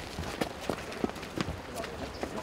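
Footsteps of several people walking on a cobblestone path: a run of short, sharp steps a few tenths of a second apart, with voices in the background.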